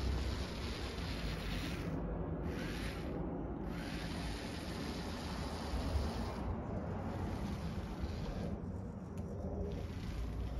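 Small four-wheeled RC buggy driving on a timber deck, its little DC gear motors running and its wheels rolling on the boards, a steady noisy sound with no clear pitch.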